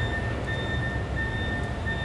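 An electronic warning beeper sounding a high steady beep, about half a second on with brief gaps, repeating about every 0.6 s over a low rumble of vehicle noise.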